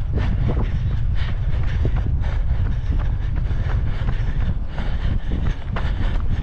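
Wind buffeting the camera microphone in a steady low rumble, with the runner's footfalls on the paved path as a steady rhythm of short knocks.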